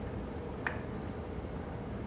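Steady low room hum, with a single short sharp click about two-thirds of a second in.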